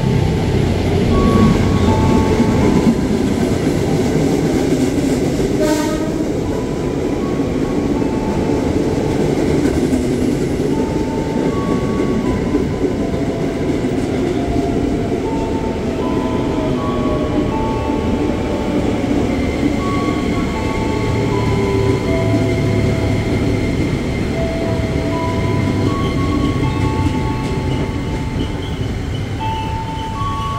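JR 205 series electric commuter train pulling into the platform and slowing as it passes, with continuous rumble from its wheels and motors on the rails. Over it runs a repeated sequence of short tones at a few different pitches, and there is one sharp click about six seconds in.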